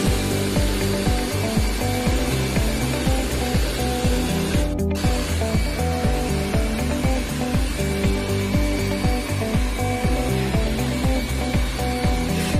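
Background music with a steady, fast beat and a repeating chord pattern, its high end dropping out briefly about five seconds in.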